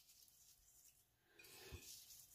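Near silence, with only a faint rustle and a soft tap near the end.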